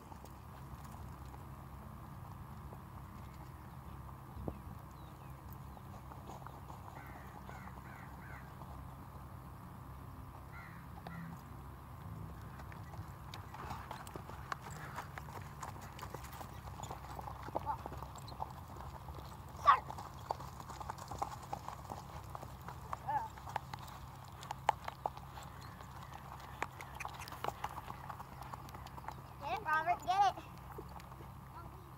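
Hoofbeats of a ridden horse on grass turf. The hoof strikes come thicker and louder in the second half as a horse nears, over a steady low hum, with one sharp knock about twenty seconds in the loudest sound.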